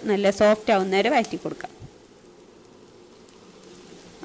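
A woman speaking for just over a second, then quiet with only faint background noise.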